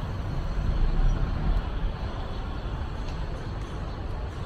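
Street traffic noise: a steady low rumble of vehicles on the road, swelling slightly about a second in.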